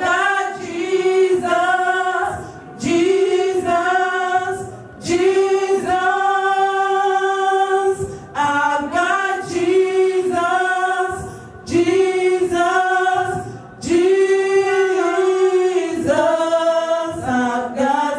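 Several women's voices singing a gospel song together without instruments, in phrases of long held notes about two to three seconds each, with short breaks between phrases.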